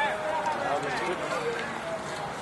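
Shouts and calls from several voices overlapping on an open rugby field as players run in open play.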